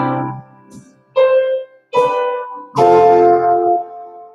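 Keyboard playing slow chords in a worship song. Each chord is struck and left to ring out and fade; new chords come about one, two and three seconds in, and the last one is held longest.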